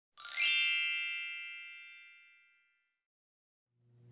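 A bright bell-like chime sounds once, shortly after the start, and rings out, fading away over about two seconds.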